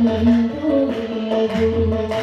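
Live Carnatic music: a sustained, gliding melody line from voice and violin over a few tabla strokes.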